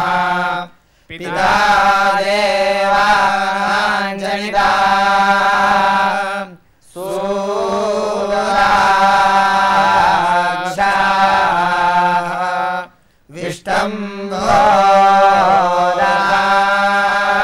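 A group of young men chanting a devotional hymn in unison on a steady pitch, in long phrases with short breath breaks about a second in, near the middle and shortly before the end.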